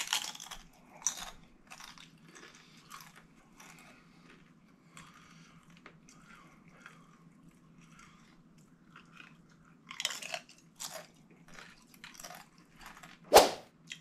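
Crunchy tortilla chips being bitten and chewed close to the microphone: loud crunches at the start and again about ten seconds in, with quieter chewing between. A single sharp click just before the end is the loudest sound.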